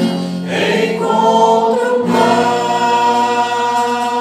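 A small group singing a Christian worship song together in long held notes, accompanied by acoustic guitar.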